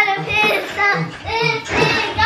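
A young child singing in a high voice, in short phrases.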